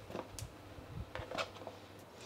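A quiet kitchen with a low steady hum and a few faint, short clicks and ticks spread through the moment.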